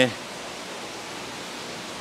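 Steady, even hiss of running aquarium water circulation and aeration, with no distinct events.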